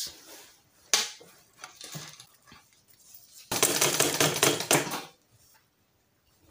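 A sharp click about a second in, then a Butterfly sewing machine stitching for about a second and a half from just past the middle, a loud rapid rattle that stops abruptly.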